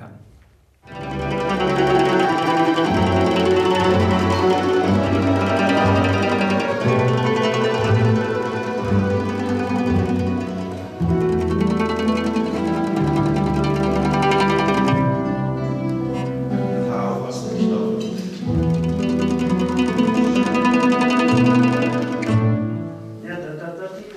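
Plucked-string orchestra of mandolins and guitars with a double bass playing a rhythmic piece. It starts about a second in and eases off near the end.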